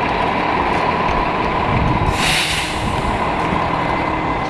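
Road traffic on a busy multi-lane street, a steady noise of passing vehicles, with a brief hiss a little over two seconds in.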